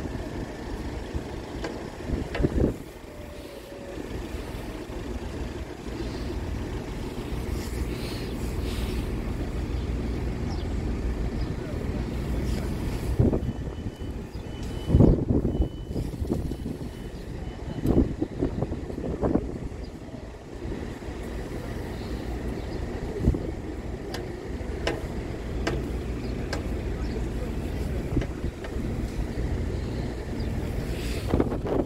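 Steady low rumble of a diesel multiple unit idling at the station platform, with wind on the microphone. About halfway through there is a short run of high-pitched beeps.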